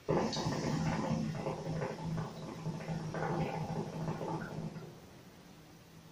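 Hookah water base bubbling continuously through a long first draw on the hose, stopping a little before five seconds in.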